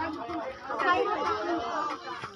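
People's voices chattering, with no clear words.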